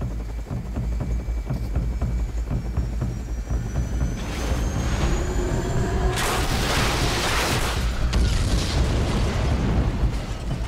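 Dramatic music over a deep steady rumble. A rushing noise builds about four seconds in, and a loud burst of crashing noise follows about six seconds in and lasts roughly two seconds, as a Sea King helicopter rolls over onto a destroyer's flight deck.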